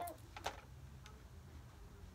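A few light clicks in the first half second from a plastic PS3 toy gun being handled, then only a faint low room hum.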